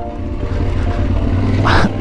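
Yamaha Ténéré 700's parallel-twin engine running steadily off-road, heard as a low hum, with a brief rush of noise near the end.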